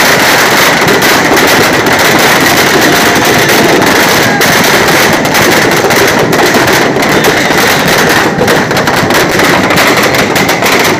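Firecrackers packed into burning Dussehra effigies going off in a loud, dense, continuous rapid-fire crackle, thinning a little near the end.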